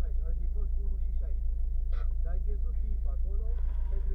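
Subaru Impreza WRX STI's turbocharged flat-four engine heard from inside the cabin as a steady low rumble, with a short sharp click about halfway through.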